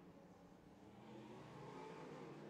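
Faint engines of several figure-eight race cars running on the track, getting a little louder about halfway through.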